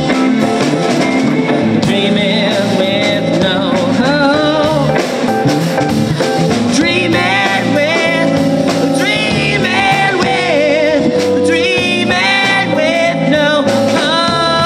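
Live rock band playing: electric guitars, bass guitar and drum kit, with a sung lead vocal at times.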